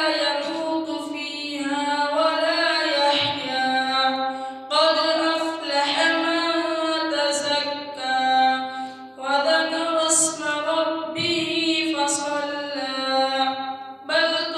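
A boy's voice reciting the Quran in the melodic chanted style (tilawat), with long held phrases broken by short breaths about five and nine seconds in.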